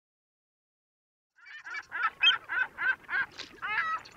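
A run of short, repeated bird calls, about three a second, starting a little before halfway through after a silent opening.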